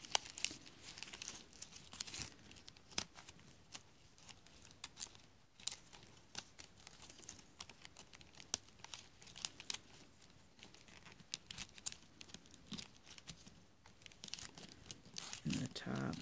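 Palm leaf strips crinkling and rustling as fingers pull them into a simple knot, with many small, irregular crackles and clicks.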